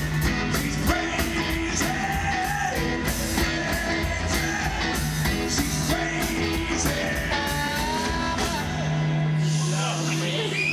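Blues band playing live: electric guitar and drums with a singing voice over them, at a steady level throughout.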